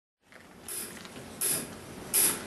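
Quiet live-venue room noise with two short hissing cymbal strokes from the drum kit, about a second apart.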